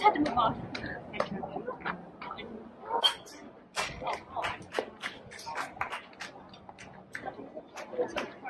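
Indistinct voices of players and spectators at a youth baseball game, with scattered sharp knocks and claps; one louder knock comes about three seconds in.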